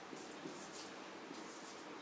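Marker pen writing on a whiteboard: a few faint, short stroke sounds.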